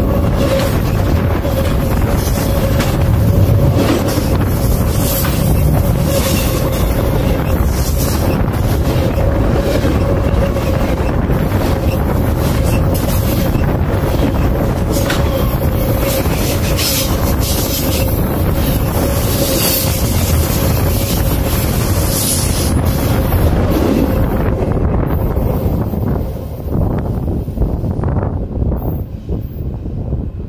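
A train rolling directly over a phone lying between the rails: a loud, continuous rumble and clatter of wheels with a steady whine running through it and rushing air buffeting the microphone. The noise eases and thins out from about four seconds before the end as the cars clear.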